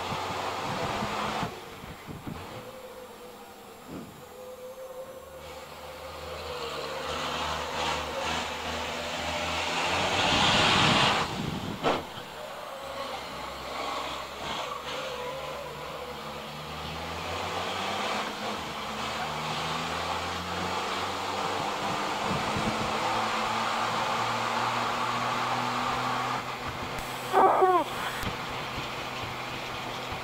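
Racing truck's turbodiesel engine heard from inside the cab, its drone stepping up and down in pitch through gear changes and then climbing steadily under acceleration. A loud rushing surge comes about ten seconds in, and a couple of short loud sweeping sounds near the end.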